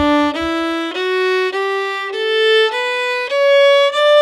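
Fiddle playing an ascending one-octave D major scale, one bowed note about every half second, starting on the open D string and rising to the D an octave above, which is held longer.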